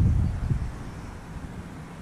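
Wind buffeting the microphone: a loud, gusty low rumble that dies away about half a second in, leaving a faint low hum.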